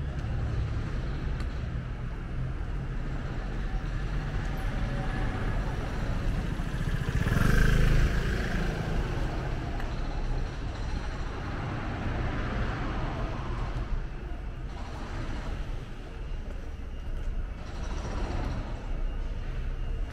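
Street traffic: a steady low rumble of cars, with one vehicle passing close and loudest about seven seconds in, then fading.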